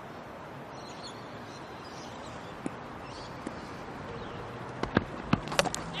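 Steady background noise of a cricket ground, then about five seconds in a few sharp knocks as a fast bowler's delivery crashes into the stumps and the bails fly.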